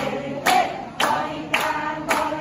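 Group of women singing an action song together, clapping their hands in time just under twice a second.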